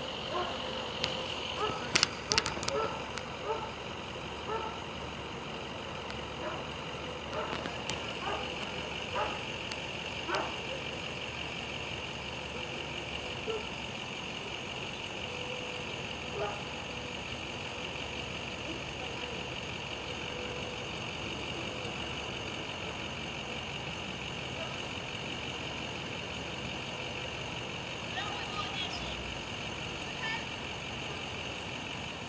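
Distant, indistinct voices over steady outdoor ambience, with a constant high-pitched hum throughout and a few sharp clicks about two seconds in.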